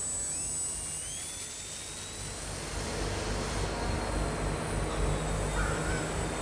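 Electric motor and propeller of a Turnigy Piaget foam indoor RC aerobatic plane running. Its whine rises in pitch about a second in as the throttle opens, then holds steady over a low, steady rumble.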